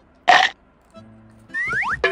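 A short, loud, rough burst about a quarter second in, over soft background music, then a rising whistle-like cartoon sound effect near the end.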